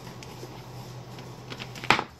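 A low steady electrical hum, with one sharp click near the end as a hand knocks against the homemade solar battery-and-inverter box.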